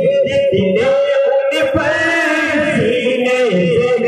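Two men singing an Islamic devotional song together through microphones and a loudspeaker system, in a chanting style with long held notes.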